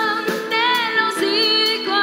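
A song with a woman singing long held notes with vibrato over instrumental accompaniment.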